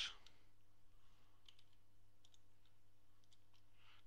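A few faint computer mouse clicks over near-silent room tone with a low hum.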